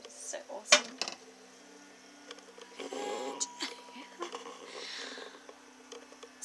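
A sheet of glass being lifted off a sprout tray, knocking and clinking against the tray's rim, with one sharp click under a second in.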